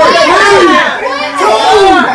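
Several people shouting and squealing excitedly over one another in high voices, with no clear words.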